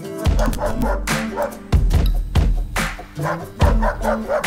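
Intro music with three deep bass hits spaced about two seconds apart.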